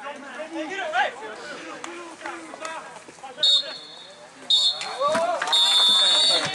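Referee's whistle blown three times on a football pitch: two short blasts, then a longer third one. Near the close of the match this is the full-time whistle. Players' voices shout across the field around it.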